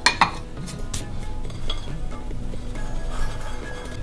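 Kitchenware clinking as a metal sieve and bowls are handled after sifting flour: one sharp clink just after the start and a few lighter clinks about a second in, over soft background music.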